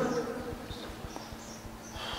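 A pause in a man's sermon: his voice fades out at the start, leaving only faint steady background hiss with a few soft clicks.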